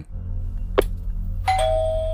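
Doorbell chiming a two-note ding-dong, high then slightly lower, starting about one and a half seconds in and fading, after a single short click.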